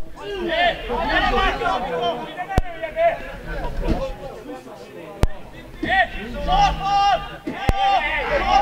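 Men's voices talking and calling out across a football pitch during a stoppage in play. Sharp clicks cut through about every two and a half seconds.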